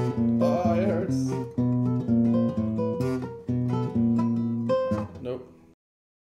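Nylon-string classical guitar, fingerpicked: a steady run of single notes over a repeating low bass note, cutting off suddenly near the end.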